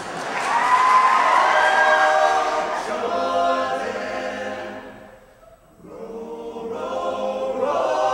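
Men's a cappella group singing a traditional spiritual in several-part harmony. The sound fades to a brief pause about five seconds in, then the voices swell back in.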